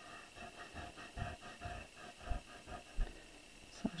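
Faint, quick back-and-forth rubbing of an eraser on watercolour paper, gently lightening pencil lines.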